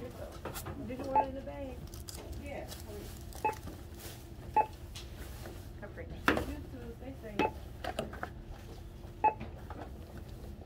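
Retail checkout barcode scanner beeping as items are scanned: about six short, single beeps spaced irregularly a second or two apart.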